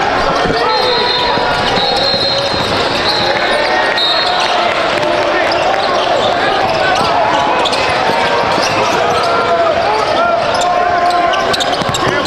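Live basketball game sound in a large gym: a ball bouncing on the hardwood court, with players' and spectators' voices in the background.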